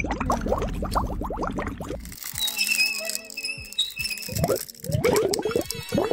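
Bubbling, gurgling water sound effect of a tank being drained, lasting about two seconds. It is followed by a shimmering, chime-like musical effect with rising sweeps.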